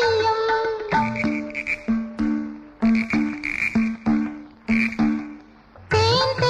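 A held sung note in a Malayalam film song ends about a second in. The accompaniment then plays a rhythmic run of short frog-like croaks, two low pitches alternating about twice a second with clicks, as a musical imitation of frogs.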